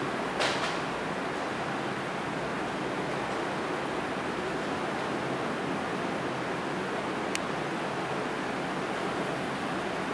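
Steady hiss of background noise, with a brief scratchy sound about half a second in and a faint click about seven seconds in.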